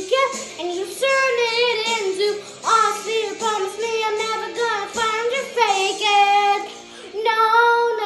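A young girl singing solo in runs of wavering pitch, then holding a long note with vibrato near the end.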